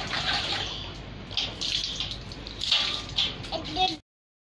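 Bath water splashing and being poured from a metal bucket over a toddler, in several bursts about a second apart, with a child's brief vocal sound near the end; the sound cuts off suddenly at the end.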